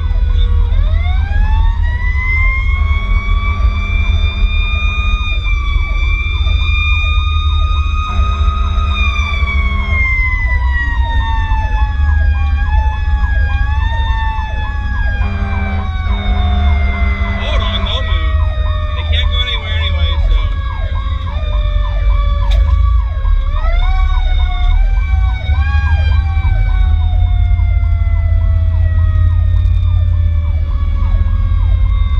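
Fire rescue truck's sirens while responding. A mechanical siren winds up about a second in, holds a high wail, then slowly winds down with brief boosts along the way. An electronic siren yelps rapidly throughout, over steady low wind and road noise.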